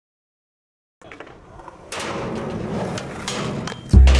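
Skateboard wheels rolling on concrete with scattered clicks and knocks. The sound starts about a second in and grows louder from about two seconds.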